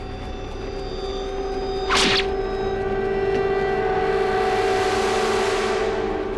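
Edited-in sound effects: a sustained droning tone with a whoosh about two seconds in and a hiss that swells toward the end.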